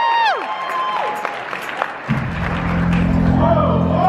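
Audience applauding as a rising music swell cuts off; about two seconds in, a dance track starts over the PA with a heavy, steady bass.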